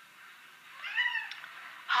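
A cat meowing once, about a second in, a single call that rises and falls in pitch.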